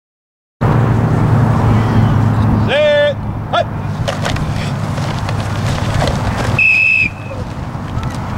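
Outdoor youth football drill: a loud shout about three seconds in, then a short, high whistle blast near seven seconds, over a steady low rumble.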